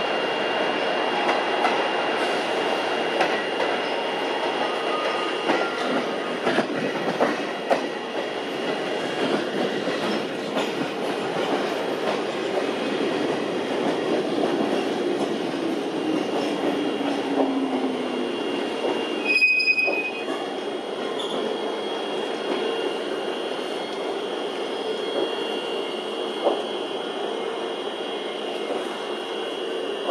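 Electric train running on the rails, a steady rumble with scattered wheel-on-rail clicks and some wheel squeal. A motor tone falls slowly in pitch a little past the middle, and a short high beep sounds about two-thirds of the way through.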